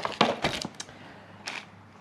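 A wiring loom and a plastic DTM connector being handled: a quick run of small clicks and rustles in the first second, then one more click about a second and a half in.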